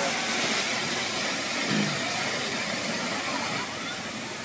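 Steady rush of a waterfall, an even roar of falling water, with a brief faint voice about halfway through.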